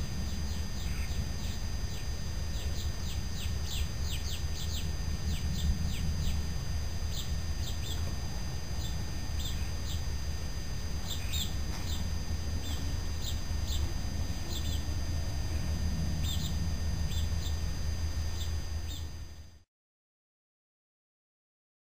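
Small birds chirping over and over in quick short calls, over a steady low rumble. The sound cuts off abruptly just before the end.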